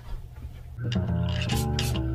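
Low steady hum, then background music begins about a second in with steady sustained notes.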